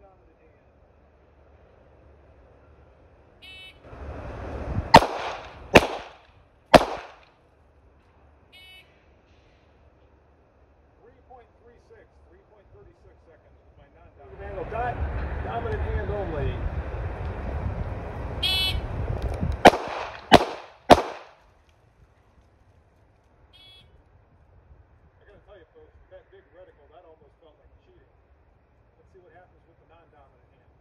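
Two strings of three pistol shots. The first three crack out about a second apart, and the second three come faster, about half a second apart, inside a stretch of steady rushing noise.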